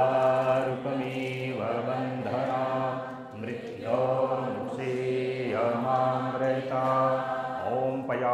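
Devotional Sanskrit mantra sung as a chant. The voice holds long, level notes, breaking for a breath about three and a half seconds in and again near the end.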